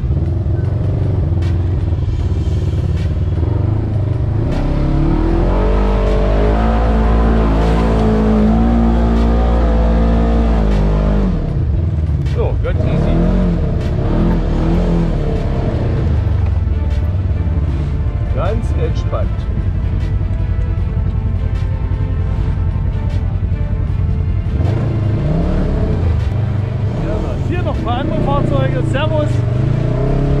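Polaris RZR XP 1000 side-by-side's engine running under load and revving up and down as it drives, heard from on board; a long climb in revs from about four seconds in, dropping off at about eleven seconds.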